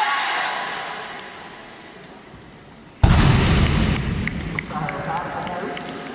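A loaded barbell with bumper plates dropped from overhead onto the lifting platform after a snatch, landing with a single heavy thud about halfway through that slowly fades in the hall. Shouting voices come before it.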